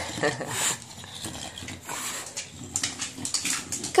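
English bulldog making noisy, irregular snuffling and grunting breaths while it paces about, excited by its food.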